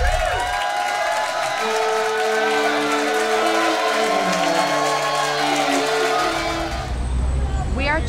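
Channel intro music sting: a run of held notes stepping downward in pitch over a dense, noisy wash, which fades near the end as a woman starts speaking.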